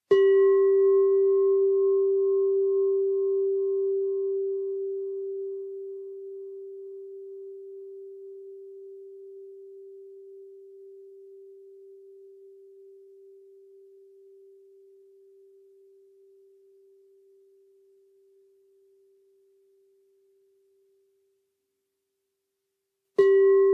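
Singing bowl struck once, ringing with a steady low tone and fainter higher overtones. The overtones fade within a few seconds, the upper one pulsing slowly, while the low tone dies away gradually over about twenty seconds.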